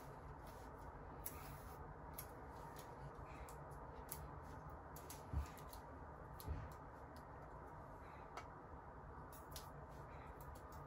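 Faint handling noise from fitting an adhesive foam seal strip to an aluminium radiator fan shroud: scattered small ticks and clicks, with two soft low thumps about midway.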